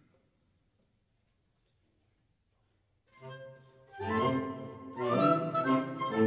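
Near silence, then a chamber wind ensemble begins playing about three seconds in. It opens with a soft, low held chord, and the full group enters about a second later with louder sustained chords.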